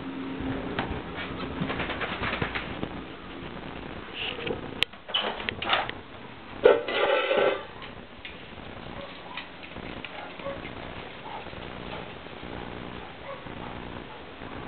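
A door being unlatched and opened: a sharp click about five seconds in, then a louder squeaky scrape near seven seconds, amid shuffling movement. Faint bird calls follow.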